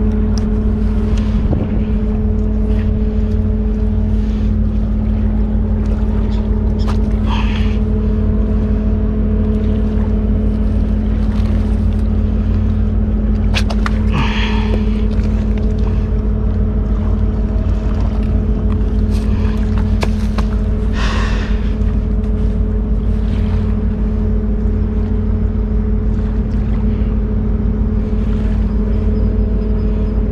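Steady low engine drone with a constant hum. Three short, higher-pitched sounds come over it about seven seconds apart.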